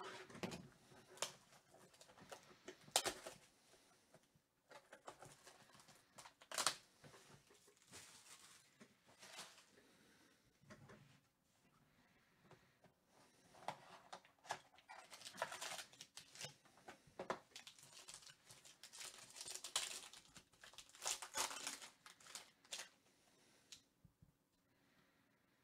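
Plastic shrink wrap being torn open and peeled off a sealed Panini Obsidian football card hobby box: quiet, irregular crinkling and tearing with scattered sharp clicks and taps as the box is handled, busiest in the second half.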